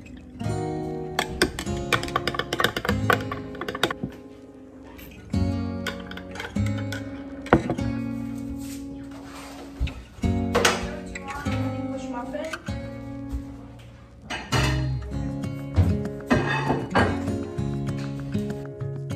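Background music led by strummed and plucked acoustic guitar, playing steadily.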